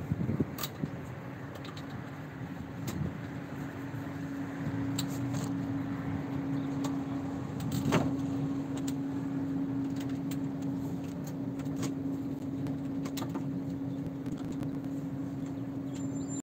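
Street ambience heard from above: a steady hum under road-traffic noise that slowly swells to a peak about halfway through and then holds, with scattered faint clicks.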